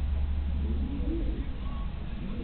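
Distant voices of players calling out across a football pitch, over a steady low rumble that fades about a second and a half in.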